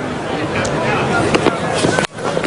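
Steady cricket-ground crowd ambience: a hum of spectators' chatter with indistinct voices and a few faint knocks.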